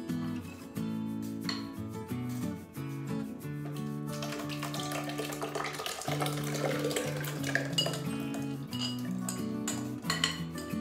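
Background music over a spatula scraping and clinking against a glass mixing bowl as thick flour batter is poured out of it into a blender jar. There are short clicks of the spatula on the glass near the start and again in the last couple of seconds.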